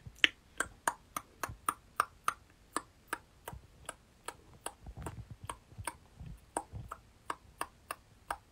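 A run of short, sharp mouth clicks and lip smacks made with puckered lips, about three a second at uneven spacing; the loudest comes just after the start.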